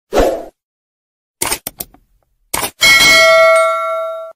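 Subscribe-button animation sound effects: a short rush of noise, then a few quick clicks, then a loud bell ding a little under three seconds in that rings on and fades slowly.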